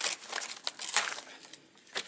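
Paper mailing envelope and its taped wrapping being torn open and crinkled by hand: irregular crackling, loudest at the start and again about a second in, dying down near the end.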